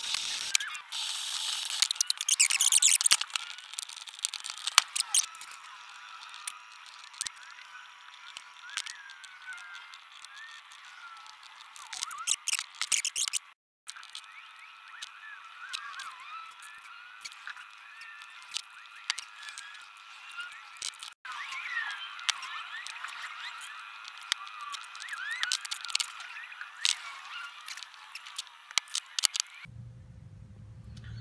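Rotary tool with a wire brush scrubbing the tops of 18650 cells for the first few seconds, with a steady whine under the scrubbing. Then come scattered sharp clicks and taps from bench work, over faint high chirps.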